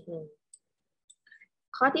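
A woman speaking Thai, broken by a gap of about a second and a half in which a few faint, short clicks sound.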